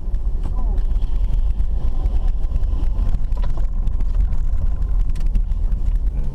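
Car cabin noise while driving over a dirt road: a steady low rumble from the engine and tyres, with frequent short clicks and rattles.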